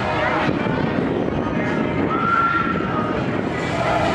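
Busy fairground din: crowd voices mixed with the steady running noise of ride machinery, with a brief high tone about two seconds in.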